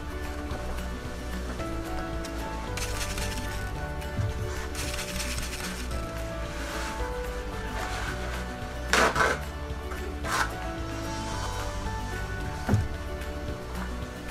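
Background music with sustained notes and a steady bass line. Short sharp clicks or knocks sound about two-thirds of the way through, twice close together, and once more near the end.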